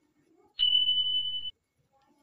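A single steady, high-pitched electronic beep, just under a second long, that starts and stops abruptly: an edited-in sound-effect tone.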